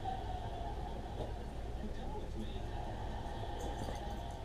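Faint, muffled television dialogue over a steady low room hum.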